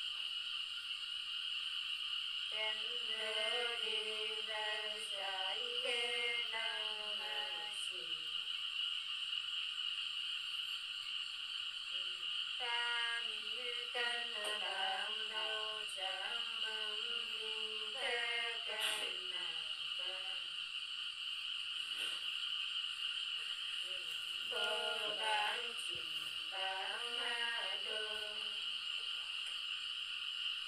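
A woman singing a Nùng folk song alone, in three long drawn-out phrases with pauses between. Under it runs a steady high chirring of insects.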